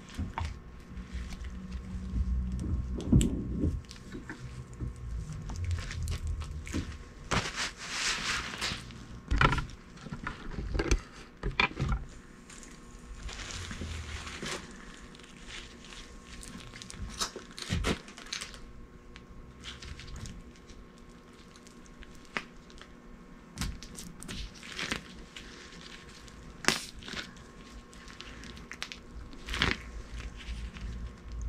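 Gloved hands working a new rubber CV boot over the grease-packed joint of a 2019 Chevrolet Spark CV axle. Irregular rubbing and handling noises with scattered sharp clicks and knocks.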